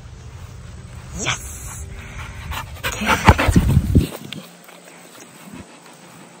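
A chocolate Labrador retriever panting after running in on recall, with a burst of loud rumbling and knocks about three seconds in.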